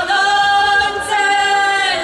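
Group of women singing together unaccompanied, holding one long note and moving to another about a second in.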